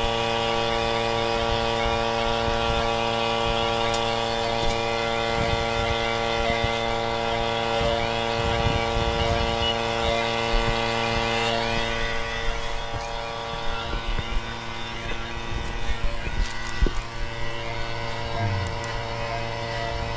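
Budget two-stage electric HVAC vacuum pump running steadily while pulling a vacuum on a refrigerant tank: an even hum with many steady overtones, with a few faint clicks. It doesn't sound like a typical vacuum pump.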